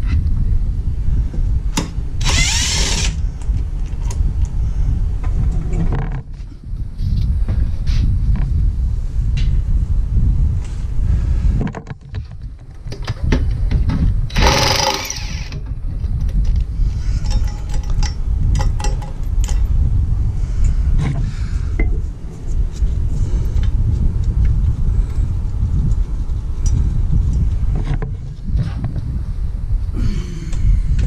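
DeWalt cordless impact wrench driving a bolt home in two short runs of about a second each, one near the start and one in the middle, with scattered clicks and knocks of tool and parts being handled between them. A low rumble runs underneath.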